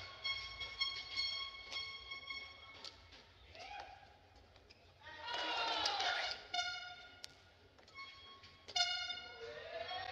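Badminton play in a large hall: shoes squeaking on the court mat, with sharp racket strikes on the shuttlecock. There is a louder burst of squealing about five seconds in, as the point ends.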